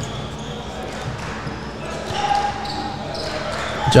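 A basketball being dribbled on a hardwood gym floor, under a steady wash of background voices in the gym.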